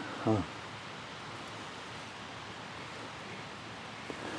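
A brief spoken "huh?" at the start, then a steady, faint, even hiss of outdoor background noise with no distinct events.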